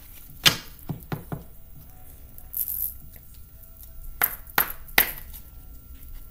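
Tarot cards being shuffled and tapped on a table: a few sharp taps in the first second and a half, a brief rustle of cards, then three more taps near the end.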